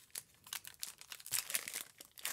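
Foil Yu-Gi-Oh booster pack wrapper crinkling in the hands as it is handled, in short, irregular crackles.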